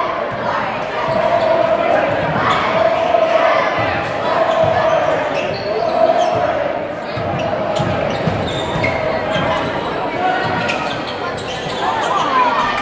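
A basketball being dribbled on a hardwood gym floor, with repeated bounces. Crowd voices echo through a large gymnasium throughout.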